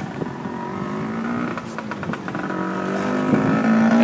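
Street traffic: a motor vehicle's engine running and drawing nearer, growing louder over the last two seconds.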